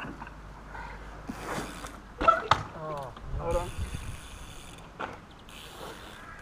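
A trials bike ridden over wet tarmac, with a couple of sharp knocks about two seconds in and a hiss of tyres later on, and a short voice-like cry in between.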